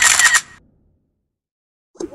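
Camera shutter sound effect: one short, sharp, noisy click that dies away about half a second in.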